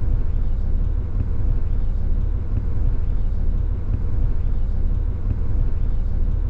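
Steady low rumble of a vehicle's engine and road noise heard from inside the cabin, with a faint constant hum above it.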